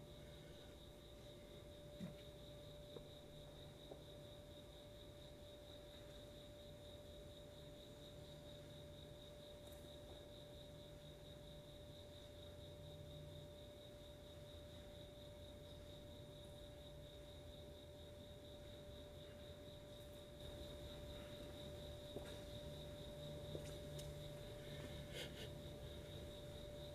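Near silence: room tone with a faint, steady electrical hum made of two thin constant tones, one mid-pitched and one high.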